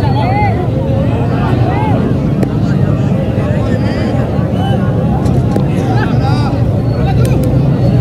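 Crowd of spectators around a kabaddi court: many overlapping voices calling out and chattering over a steady low rumble.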